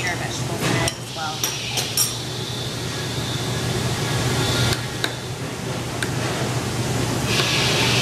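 A metal utensil clinks against a stainless steel pot several times in the first two seconds, then stirs thick congee with turkey and bok choy in the pot. A steady low hum runs underneath, and a brief scraping noise comes near the end.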